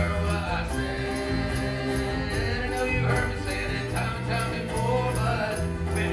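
Live acoustic band playing a song: sung vocals over strummed acoustic guitar and ukulele with a steady bass line, and light regular high ticks keeping the beat.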